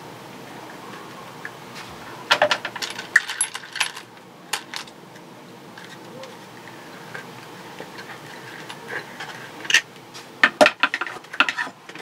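Loose steel bolts clinking as a hand rummages through them in a plastic parts bin, in two bouts of sharp metallic clinks: about two seconds in and again near the end.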